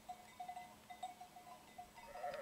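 Faint livestock sounds from a distant flock: a series of short, clear notes at one pitch that come and go irregularly.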